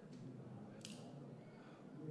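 A faint single click from a telescoping metal key being handled close to the microphone, about a second in, over a low steady background hum.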